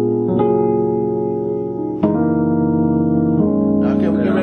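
Digital keyboard with a piano sound playing a slow gospel chord movement in F sharp major (E flat minor colour), held chords changing about a third of a second in, about two seconds in and again near the end.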